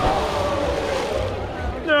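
Excited shouting from several people over a rushing noise that starts abruptly, ending in a long drawn-out "whoa" near the end.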